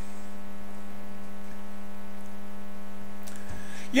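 Steady electrical hum, a single buzzing tone with a long row of evenly spaced overtones, carried on the recording's audio.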